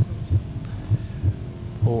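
Suspense heartbeat sound effect: low thuds at about three a second over a faint steady hum, building tension before a contestant's elimination verdict is read.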